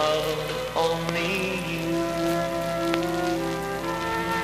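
A vintage pop ballad played from a vinyl LP on a turntable: the instrumental close after the last vocal line, held notes with a new chord about a second in, over light record-surface crackle.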